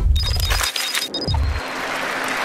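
TV programme transition sound effect: two low thumps, one at the start and one about a second and a half in, with a pulsing high electronic beeping between them, leading into an advert's music.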